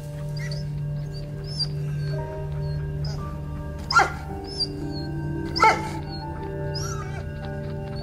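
Sombre background music held on a low drone, with a dog crying out twice, short and falling in pitch, about four and five and a half seconds in.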